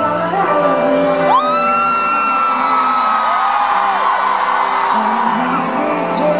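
Live pop-rock band music played loud through an arena sound system, with a single voice swooping up about a second in and holding one long high note for about three seconds.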